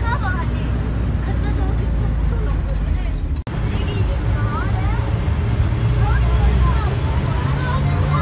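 Minibus engine running with road noise, heard from inside the cabin while driving: a steady low rumble, a little stronger in the second half, with faint voices over it and a brief break about three and a half seconds in.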